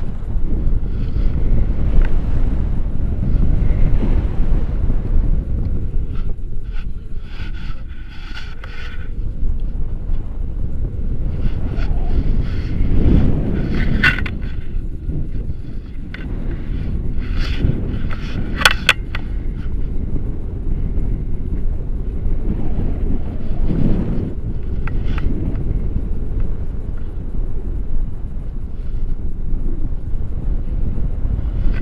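Airflow buffeting the microphone of a selfie-stick camera in paragliding flight: a loud, low rumble that swells and eases in gusts, with a few short sharp clicks around the middle.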